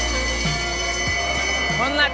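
Background music with a steady beat: an electronic track with deep kick drums about every 0.6 s under a held high tone.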